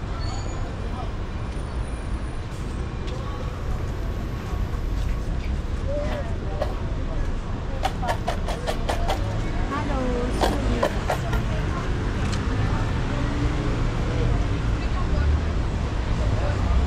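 City street ambience: a steady rumble of road traffic with passers-by talking, and a quick run of sharp clicks about eight to eleven seconds in.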